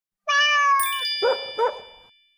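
Title sting: one cat meow held at a steady pitch, then a bright chime that keeps ringing, with two short sharp sounds in quick succession as it fades.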